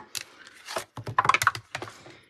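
Clear plastic cutting plates of a Stampin' Up! Mini Stamp and Cut and Emboss Machine being handled and slid out of the machine after a die cut. A quick, irregular run of light plastic clicks and taps.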